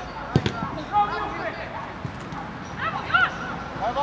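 A football being kicked: one sharp thump about half a second in, amid shouted calls on the pitch.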